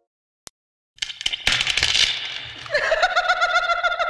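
Silence for about a second, broken by a single click. Then outdoor noise, and from past halfway a person's long, high-pitched yell held on one note as they ride a rope swing out over the water.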